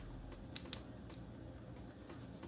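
Two small metallic clicks about a fifth of a second apart, the second leaving a brief high ring, as the metal parts of a Bevel safety razor are handled and taken apart.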